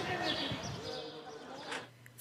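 Indistinct chatter of a small gathered crowd of people talking among themselves, fading out near the end.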